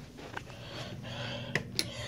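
A light switch clicking as the room light is turned on: a couple of sharp clicks near the end, over faint rustle.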